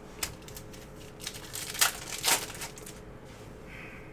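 Stiff chromium trading cards being shuffled through by hand: a run of light slides and clicks of card against card, with two sharper clicks in the middle.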